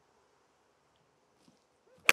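Near silence: faint outdoor room tone.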